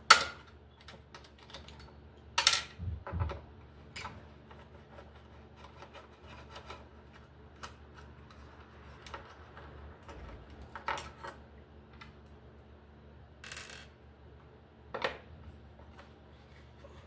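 Scattered sharp metal clicks and knocks from a screwdriver and parts being handled inside a sheet-metal light fixture housing while a capacitor is unscrewed. The loudest click comes right at the start, with a few more spread through, about a dozen seconds apart at most.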